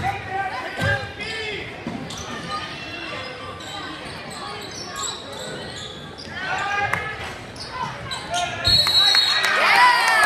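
Voices of spectators and players echoing in a gymnasium during a basketball game, with the ball bouncing on the hardwood court. The voices get louder near the end.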